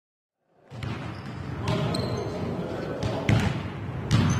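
Basketball bouncing on a hardwood gym floor during a game, the impacts echoing in a large hall, with brief high squeaks and players' voices. The sound comes in after about half a second of silence.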